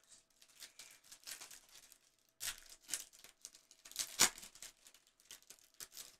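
Faint rustling and crinkling of a foil trading-card pack wrapper and baseball cards being handled, with a few sharper scrapes about 2.5, 3 and 4 seconds in.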